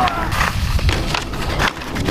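Skis skidding and scraping over hard snow, with several sharp knocks and scrapes as the skier goes down low and sprays snow.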